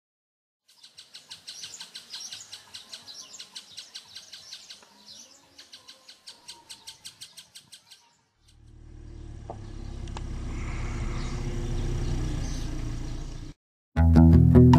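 A bird chirping in quick repeated high notes for the first eight seconds. Then a low rumble swells steadily and cuts off suddenly shortly before the end.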